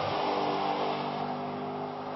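Audi RS5's V8 engine running at a steady pitch as the car drives on the track.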